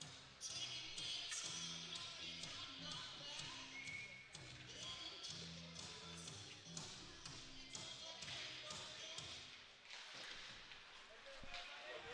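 Faint music over an ice rink's PA speakers, with a repeating bass line, under faint voices and scattered taps of sticks or pucks on the ice.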